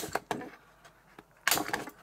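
Hand-held hole punch clicking as it punches holes through a grey cardboard book cover: a couple of clicks near the start and a louder snap about one and a half seconds in.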